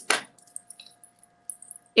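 A metal snap clasp on a bracelet popping open under a fingernail with one sharp click just after the start, followed by light metallic clicks and clinks as the bracelet's linked pieces are handled.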